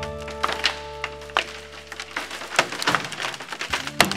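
Background music with sustained notes that stops about two seconds in, over a series of sharp cracks and snaps of cross-laminated timber splitting and splintering under load at a screwed splice connection.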